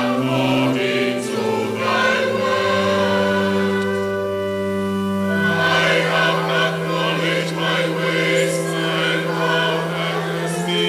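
Church choir singing in an Anglican evensong, over held low notes that step from pitch to pitch.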